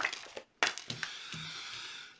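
Tarot cards being handled on a table: a sharp snap, then a second one about half a second later that runs into a steady rustle of cards sliding.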